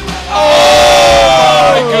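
Rock-rap backing music with a loud, drawn-out exclamation of "oh, oh my goodness" over it, starting about half a second in and falling in pitch.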